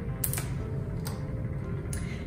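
A few sharp metallic clicks and rattles as a small metal clamp is handled and taken off a glass flask, over a low steady rumble.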